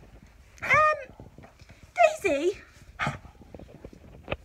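Small dog whining in two short calls: the first rises and falls, the second wavers up and down. A short breathy huff follows about three seconds in.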